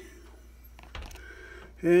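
A few faint clicks and a soft knock about a second in, over low room tone, as the old faucet's fittings under a kitchen sink are handled.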